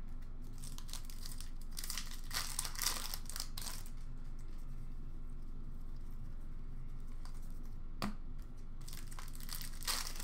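Hockey card packs being opened and handled: wrappers crinkling and tearing, with cards rustling, strongest from about two to four seconds in and again near the end. A single sharp click comes about eight seconds in.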